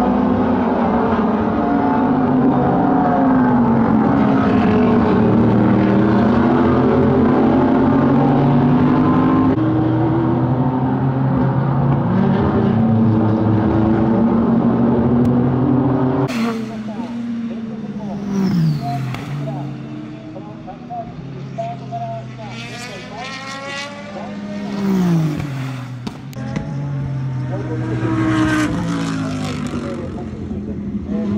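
SUPER GT race cars at racing speed: for the first half a pack of engines sounds together in a dense, overlapping note. About halfway through the sound drops suddenly, and single cars then pass one after another, each engine note falling in pitch as it goes by.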